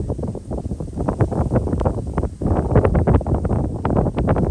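Wind buffeting the microphone: an uneven rumbling rush that rises and falls in gusts, with many short crackling spikes.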